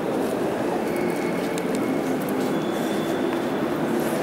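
Steady hubbub of many visitors' voices blending together, echoing in a large stone church nave.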